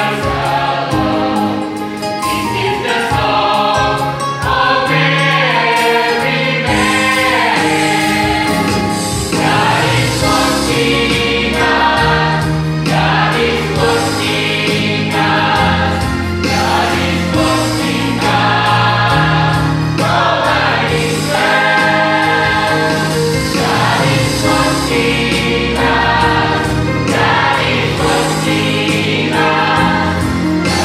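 Mixed choir of young men and women singing a gospel song in parts, with held notes over a steady low accompaniment line.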